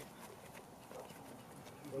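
Quiet outdoor background: faint distant voices and a few light ticks and scuffs, with a man's voice starting at the very end.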